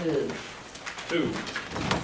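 Indistinct low murmuring voices, too faint for words, with a few light clicks.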